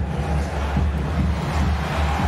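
Steady low rumble of arena background noise in a basketball arena during live play.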